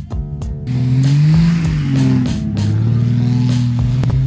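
Jeep Wrangler YJ engine revving up and easing back off once, from about a second in, then holding steady as the wheels spin in the snow, under background music with a steady beat.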